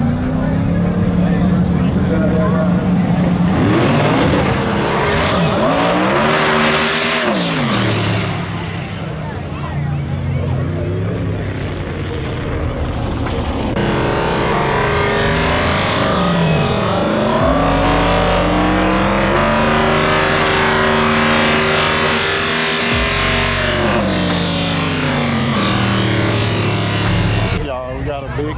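Drag cars' engines revving up and falling back at the starting line, then held at full throttle through a long pull of several seconds before backing off near the end. A thin high whine rises and falls above the engine note.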